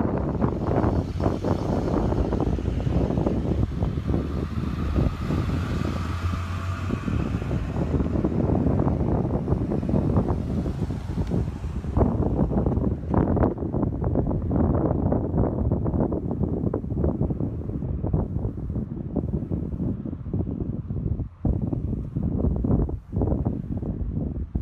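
Wind buffeting a cell phone's microphone in heavy gusts, with a vehicle engine running low underneath for roughly the first eight to ten seconds.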